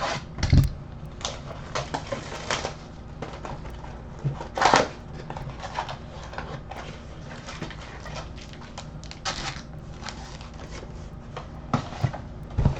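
Clear plastic shrink wrap crinkling and tearing as it is pulled off a cardboard box of trading cards, in irregular rustles with a few louder crackles and light knocks of the box being handled.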